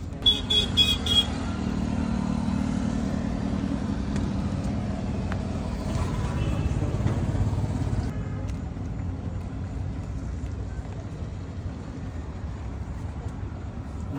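Street traffic: a motor vehicle's engine hum swells and fades, with four quick high beeps about half a second in.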